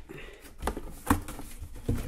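A cardboard box being handled and turned on a work table: about four short, light knocks, the loudest a little over a second in.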